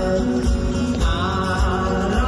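Live rock band music played loud over a concert PA, with a steady pounding beat and layered instruments.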